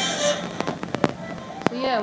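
Intro music cuts off shortly after the start, followed by about five sharp clicks spread over a second or so. A voice begins near the end.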